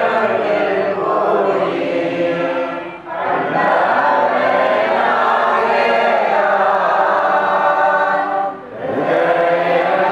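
A group of voices chanting a devotional mantra in long, held phrases, with short breaks about three seconds in and near the end.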